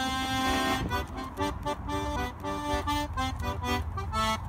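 Dino Baffetti button squeezebox playing an instrumental break in a folk song: a held chord, then a bouncy run of short melody notes over chords.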